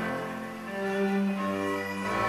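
Orchestral string section, violins and cellos, playing sustained held chords; the notes shift to a new chord about a third of the way in.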